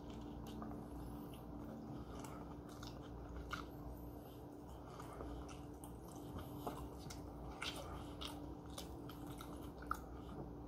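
A person chewing a mouthful of grilled tortilla wrap, soft and faint, with scattered small wet mouth clicks.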